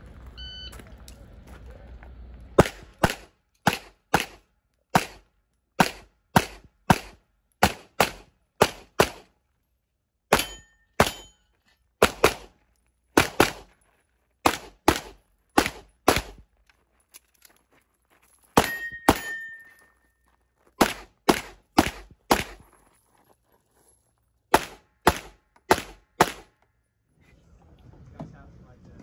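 Competition shot timer beeps once about half a second in. Then come about thirty-five pistol shots in quick pairs and strings, with short pauses between groups. A few shots are followed by a brief metallic ring, the clearest a little past the middle.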